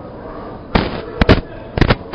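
Four sharp pops over faint background noise: the first about three-quarters of a second in, a close pair around the middle, and the last near the end.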